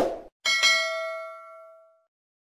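Subscribe-button sound effect: a brief burst of noise at the very start, then a notification-bell ding about half a second in that rings on several tones and fades out over about a second and a half.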